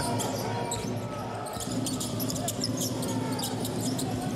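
Basketball arena ambience: a steady crowd murmur, with short sharp ball and shoe sounds from the court coming thicker in the second half.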